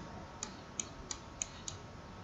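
Five faint, sharp clicks in an even run, about three a second, over low room hiss.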